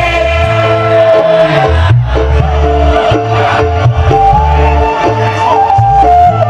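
Live dangdut koplo band playing a song, with a pulsing bass line under a lead melody held on long notes.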